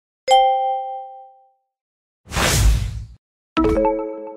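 Quiz-game sound effects: a ringing two-note chime as the countdown timer runs out, a short whoosh a little past two seconds in, then a bright cluster of chime tones near the end as the next question appears.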